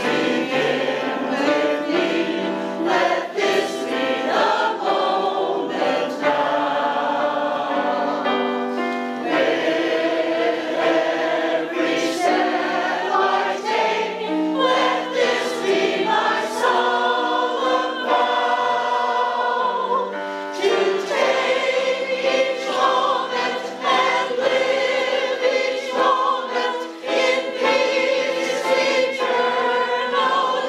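Mixed-voice choir of men and women singing in harmony, accompanied on a digital piano keyboard.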